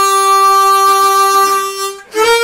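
Chromatic harmonica holding one long, steady note that fades away at the end.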